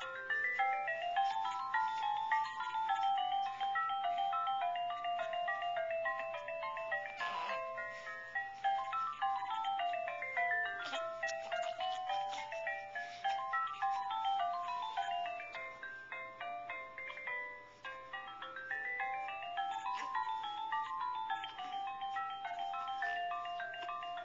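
Electronic toy melody from a musical baby seat: a simple tune of quick single notes stepping up and down in runs, the phrase repeating several times, with a ringtone-like sound.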